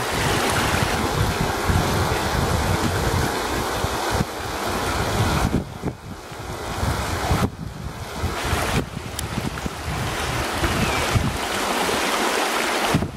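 Shallow rocky stream running over stones, with wind buffeting the microphone in uneven gusts that ease off for moments a little past the middle.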